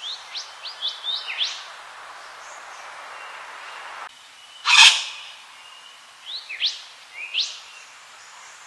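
Yellow wattlebird calling: a run of quick rising whistled notes, then a single loud, harsh note about halfway through, then a few more rising notes near the end. A steady background hiss runs underneath.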